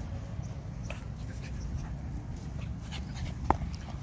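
A pug making dog sounds while running loose on grass, with one short sharp sound about three and a half seconds in.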